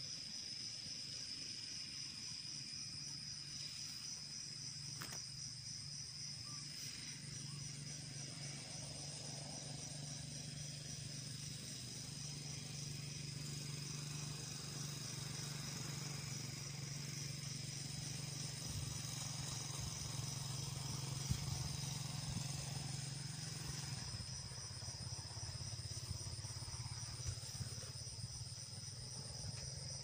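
Field insects chirring without a break in a high, finely pulsing drone. A low, steady engine hum joins a few seconds in and fades out about 24 seconds in.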